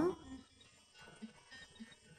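A woman's voice trails off at the very start, then a quiet pause with only faint, scattered low background sounds.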